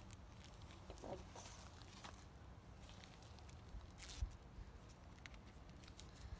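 Faint rustling and a few soft clicks of a small plastic sample bag being handled and worked open, with a sharper crinkle about four seconds in, over a quiet outdoor background.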